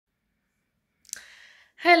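Silence for about a second, then a single sharp click, followed by a short faint breathy hiss as a woman draws breath and starts to speak near the end.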